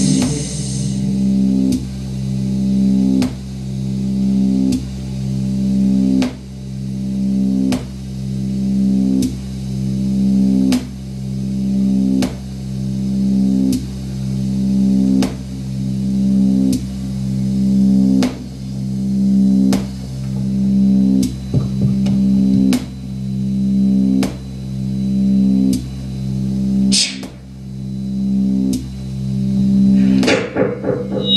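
Live electronic music: a low droning loop that swells and restarts about every one and a half seconds, with a sharp click at each repeat. A brighter, harder hit comes near the end.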